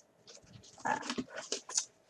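A brief hesitant "uh" from a woman's voice, followed by a light rustle of pages as a Filofax pocket ring-binder planner is picked up and handled.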